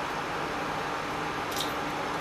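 Cooking oil poured in a thin stream from a plastic bottle into an empty stainless steel pan, over a steady low hiss, with one brief faint swish about one and a half seconds in.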